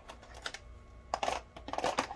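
Typing on a computer keyboard: a few scattered key clicks, the loudest cluster about a second in.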